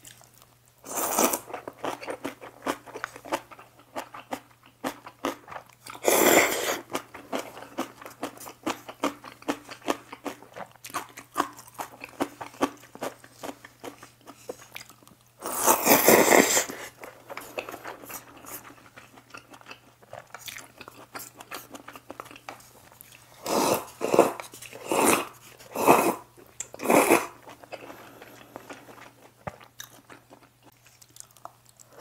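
Close-miked eating of spicy jjamppong noodles: wet chewing clicks throughout, with loud slurps of noodles about a second in, around six seconds, a long one around sixteen seconds, and a run of five short slurps near the end.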